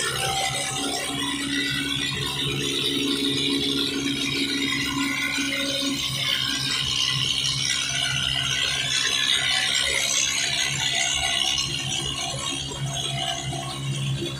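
Continuous loose rattling from a motorcycle tricycle's sidecar body, over a low steady hum.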